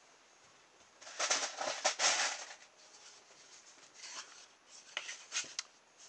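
Two homemade plywood wheels being picked up and handled: a scraping rustle about a second in that lasts about a second, then a few light knocks.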